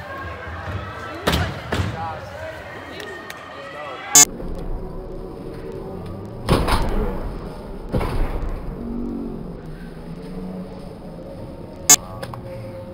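Indistinct voices and chatter in a large indoor hall, broken by several sharp bangs and thuds, the loudest about four seconds in and again near the end.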